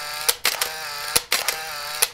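Animated logo intro sound effects: a quick run of sharp clicks and pops over short ringing tones.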